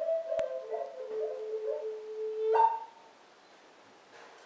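Lakota honor song sung by a man in long, high held notes that step down in pitch, with one hand-drum beat about half a second in. The song ends about two and a half seconds in with a short upward leap of the voice.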